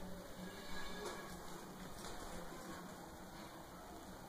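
Quiet background noise with a few faint, soft clicks or rustles.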